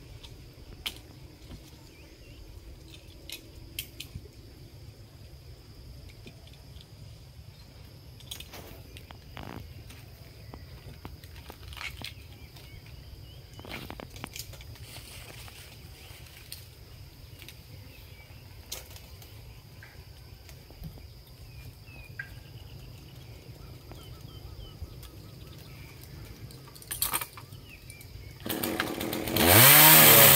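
Faint low rumble broken by a few scattered knocks and clicks. Then, near the end, a two-stroke petrol chainsaw, the GZ4350, starts up loud, its pitch rising as it revs and then holding steady.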